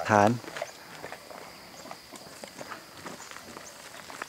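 Footsteps on gravel: faint, irregular short scuffs and crunches after a narrator's last word, about half a second in.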